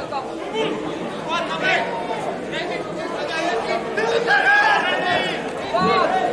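Several voices calling out and chattering over one another during open play on a football pitch, the shouts echoing around a large, sparsely filled stadium.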